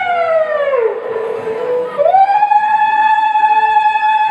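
Stage accompaniment music: a single sustained instrumental note with rich overtones, siren-like. It glides down by about an octave over the first second and a half, then slides quickly back up to its original pitch about two seconds in and holds steady.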